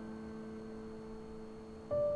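Soft piano score: a chord struck just before dies slowly away, and a single higher note is struck near the end.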